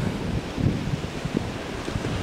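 Wind blowing across the microphone: an uneven, low noise that rises and falls in gusts.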